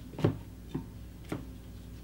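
Three light taps of tarot cards being drawn from the deck and laid down on a wooden table, about half a second apart, the first the loudest.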